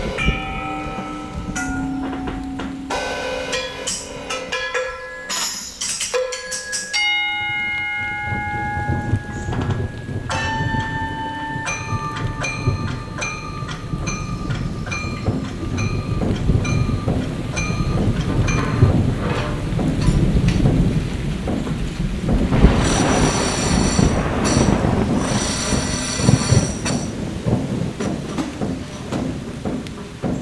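Solo percussion on drum kit and metal instruments. Struck metal ringing with clear pitches gives way to steady, repeated metallic pings over a low, continuous drum rumble. It builds to a loud cymbal wash a few seconds before the end.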